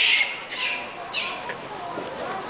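Rhesus macaques giving three short, harsh, hissy calls about half a second apart.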